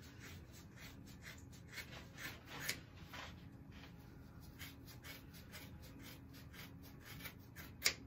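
Faint, irregular scratchy rubbing and small clicks of box braids being handled and cut with scissors as they are taken out, with one sharp, louder click just before the end.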